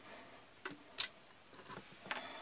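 A few small clicks as hands handle a set PVC pipe trap, the sharpest about halfway through.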